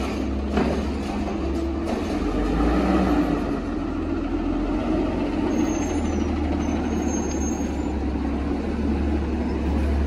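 Heil Rapid Rail side-loader garbage truck's engine running steadily as the truck rolls forward and pulls up, with a few brief high brake squeaks a little past the middle.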